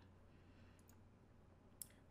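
Near silence with a faint steady low hum, broken by a single sharp computer mouse click near the end.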